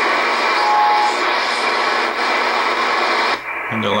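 Shortwave band noise, a steady hiss of static, from an Icom IC-R8500 communications receiver's speaker as it is tuned across the 13 MHz band. A brief steady tone sounds about a second in. The static cuts off shortly before a man starts talking near the end.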